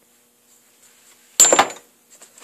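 A steel balancing arbor knocking against a motorcycle flywheel: faint handling clicks, then about a second and a half in one sharp metallic clack with a brief ring.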